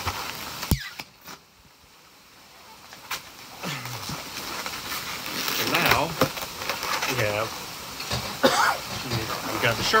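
A latex modelling balloon popped once, a sharp bang just under a second in, as the unused end of the balloon is broken off. Afterwards the sound is muffled and slowly builds back up.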